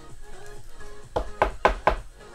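Four quick knocks, about four a second, in the second half, from a rigid plastic card top loader being tapped against the table to settle the card inside. Electronic background music plays throughout.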